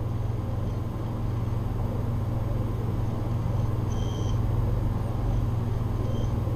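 Steady low hum over a faint background hiss, with a brief faint high tone about four seconds in.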